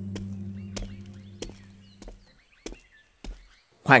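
A temple gong's low hum dies away over the first two seconds while a wooden block, a pagoda wooden fish, is struck six times at an even pace of about one knock every 0.6 s. Birds chirp faintly throughout.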